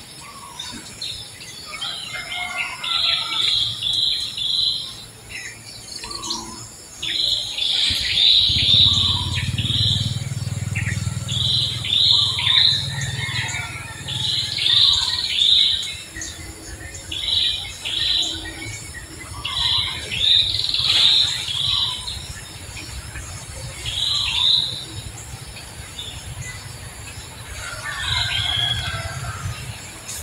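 Birds chirping in quick runs of three or four high notes, repeated every couple of seconds, over a low steady rumble that comes in about a third of the way through.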